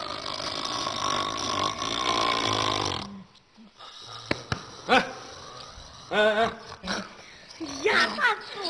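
A sleeping man snoring loudly: one long snore for about the first three seconds, then a few short voiced sounds in the second half.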